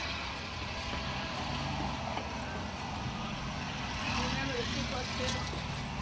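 A steady low engine hum, like a diesel running at idle, with faint voices in the background.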